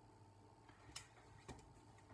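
Near silence: room tone with two faint clicks about half a second apart.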